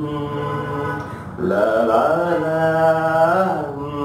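A man humming a slow Kannada song melody unaccompanied, in long held notes that slide between pitches. A new, louder phrase begins about a second and a half in.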